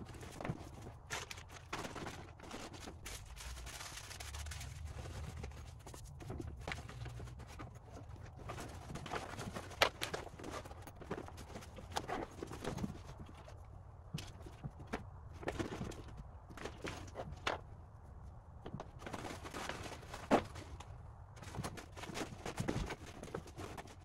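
Gear being packed into a backpack by hand: fabric rustling and shuffling with irregular small clicks and knocks as items are pushed in, and a couple of sharper knocks about ten and twenty seconds in.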